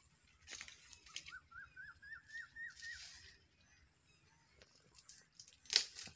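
A bird calling faintly: a run of about eight short rising whistled notes, a few a second, each a little higher than the last. A sharp click near the end is the loudest sound.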